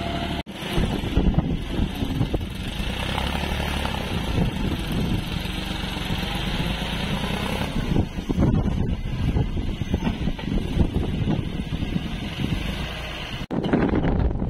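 Tractor engine running steadily under load as its front-end loader works a field and tips a bucket of manure.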